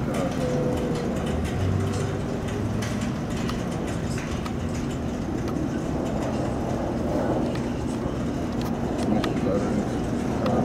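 Steady rumble of street traffic, with faint indistinct voices near the start and again near the end.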